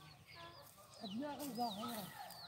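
Faint bird calls: short, high, falling chirps scattered throughout, and a lower wavering call in the second half.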